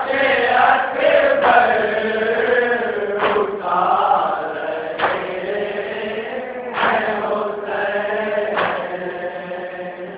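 A group of men chanting a nauha, a Shia lament for Ali Akbar, in drawn-out, wavering unison lines. A few sharp beats cut through the chanting at uneven intervals.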